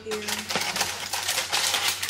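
Aluminium foil crinkling and crackling in quick, irregular clicks as it is peeled off a covered bowl, starting about half a second in.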